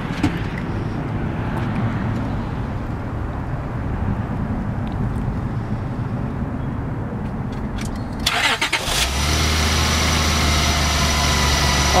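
Honda Pilot's V6 engine, heard under the open hood, cranked and starting about eight seconds in with a short rough burst, then running with a steady even hum.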